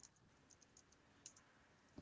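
Faint keystrokes on a computer keyboard: a few scattered, irregular clicks as a short terminal command is typed and entered.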